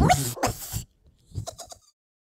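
A comic dog-like laugh: a loud burst of whinnying, yelping laughter that stops short, then a quick run of about five little yips near the end.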